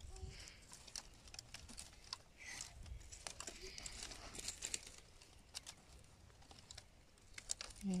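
Faint rustling and scattered light clicks of dry sticks and binding being handled as a bundle of firewood is tied tight.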